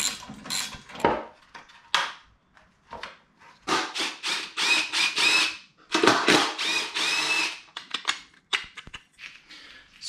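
Hand ratchet wrench clicking as bolts are run in and tightened: a few single clicks, then two runs of rapid ratcheting about four and six seconds in.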